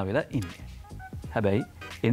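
A man's voice in two drawn-out, sing-song phrases, one at the start and one about a second and a half in, with a steady low hum underneath.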